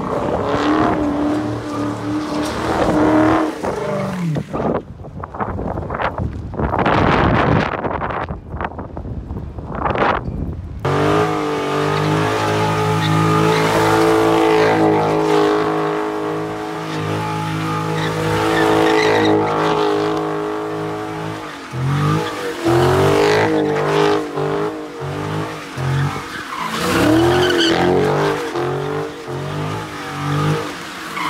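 Dodge Charger's V8 revving hard through burnouts and donuts, rear tyres spinning and squealing on the asphalt. The engine is held at a steady high pitch through the middle, then blipped on and off in quick pulses over the last several seconds.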